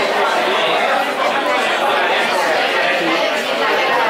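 Steady hubbub of many people talking at once in a large dining room, overlapping voices with no single speaker standing out.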